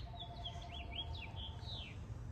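Songbirds chirping outdoors: a rapid series of short chirps and whistled notes, over a low steady background rumble.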